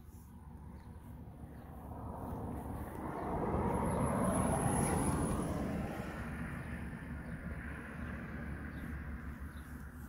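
A passing vehicle: a noise that swells to a peak about halfway through, then fades away.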